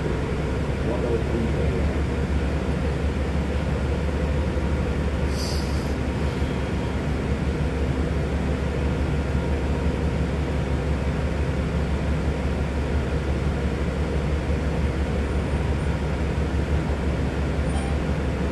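Steady low engine and drivetrain rumble heard inside the cabin of a New Flyer Xcelsior XD60 articulated diesel bus. A brief hiss comes about five seconds in.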